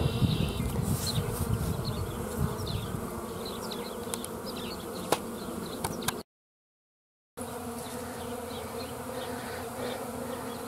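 Honeybees flying around the entrance of a wooden hive, a steady buzzing hum of many bees. The sound drops out completely for about a second in the middle, then the buzzing resumes.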